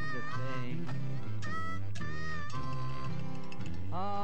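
Jug band instrumental break: a harmonica plays bending, sliding notes over strummed acoustic guitars and a low, steady jug bass.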